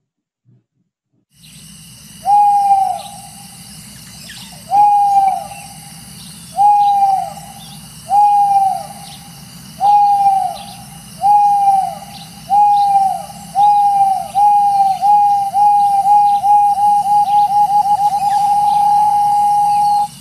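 Owl hoots mimicking a car's rear parking sensor: single hoots start about two seconds in and come ever faster, until they merge into one steady held tone near the end, as a sensor beeps when a car nears an obstacle. Under them runs a faint night-time background.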